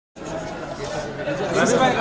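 Several people talking over one another, with one voice coming through more clearly near the end.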